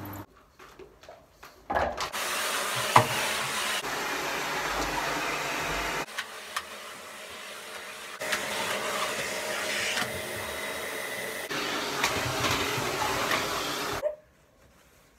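Vacuum cleaner running steadily as a floor is vacuumed. It starts about two seconds in, after a few knocks, and jumps abruptly in level several times.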